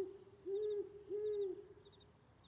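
Owl sound effect: two hoots, each a low rounded note about a third of a second long, with faint high chirping behind.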